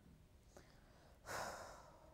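A woman's single audible breath into a close microphone, a short sigh-like rush of air a little over a second in that fades quickly, against near silence.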